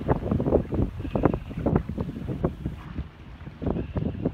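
Wind buffeting the microphone in uneven gusts over the wash of sea surf against the rocks.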